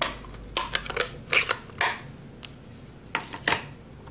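A string of light, sharp plastic clicks and taps, about eight over a few seconds, as a clear stamp on an acrylic block and a Stampin' Up ink pad are handled to ink the stamp.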